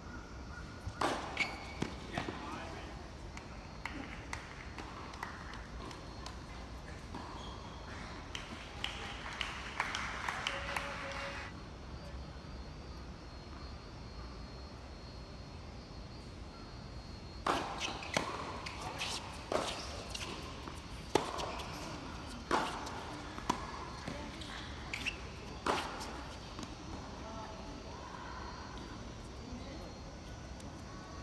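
Tennis ball hit by rackets and bouncing on the court in doubles rallies, a sharp crack roughly once a second in two spells of play. Voices can be heard between the points.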